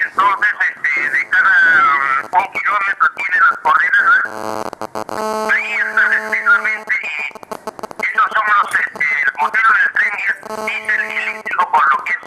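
A man speaking in Spanish, his voice thin and concentrated in the upper-middle range, with a steady hum under parts of it, around the middle and again near the end.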